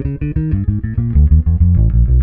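Ibanez electric bass guitar playing a quick run of single plucked notes as a fretting-hand exercise, the notes stepping down to lower, louder ones in the second half.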